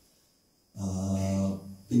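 A man's voice: after a short silence, one drawn-out syllable held at a steady pitch for under a second, then speech resumes.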